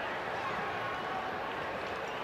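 Steady background noise of a ballpark crowd, even throughout with no distinct shouts or hits.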